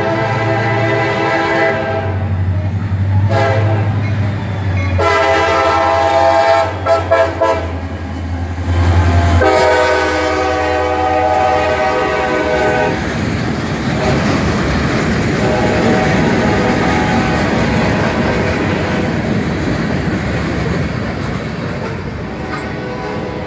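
A CSX GP40-2 diesel locomotive sounds its horn in several blasts, the last and longest ending about 13 seconds in, with its engine rumbling underneath as it passes. Loaded freight cars then roll by steadily, wheels clacking over the rail joints.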